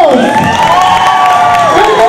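A young girl's amplified voice holding one long, high call over a background of crowd noise, with a second call beginning right at the end.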